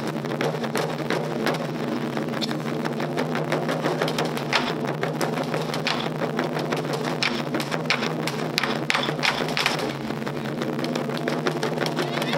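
Taiko ensemble beating nagado-daiko barrel drums with wooden bachi sticks, a dense, continuous run of rapid strokes.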